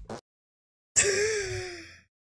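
A woman's laugh: one drawn-out, breathy, high squeal that starts suddenly about a second in, falls slightly in pitch and fades away over about a second.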